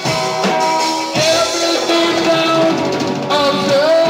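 A rock band playing a song: a lead vocal with long held, wavering notes over guitar and a drum kit.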